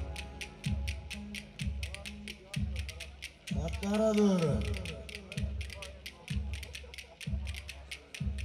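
Dance music stripped down to its beat while the plucked-string melody drops out: a low drum thump about once a second under a fast, even run of sharp clicks. Near the middle a voice calls out once, rising then falling in pitch.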